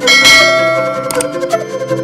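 A bright bell chime sound effect rings once at the start and fades over about a second, over electronic background music.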